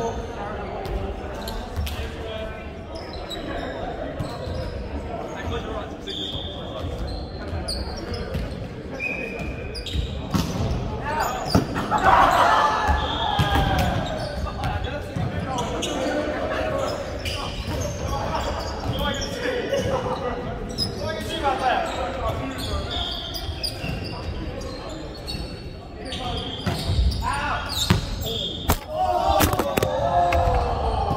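Indoor volleyball play in a large, echoing sports hall: a run of sharp ball strikes and bounces, short squeaks from sneakers on the hardwood court, and players shouting and calling, loudest about 12 seconds in and again near the end.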